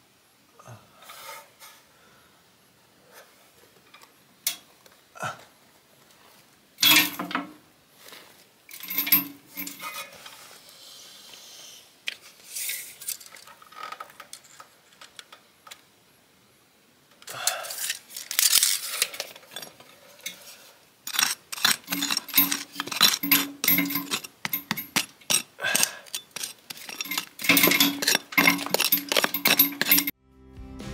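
Hand tool striking and scraping rubble stone, chipping out a wall pocket for a floor joist. Scattered knocks and scrapes at first, then, about two-thirds of the way in, a quick run of repeated sharp strikes, several a second.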